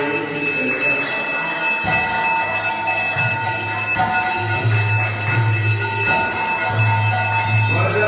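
Temple bells ringing continuously during the arati, their steady overlapping tones over devotional music, with a low tone that swells in and out several times.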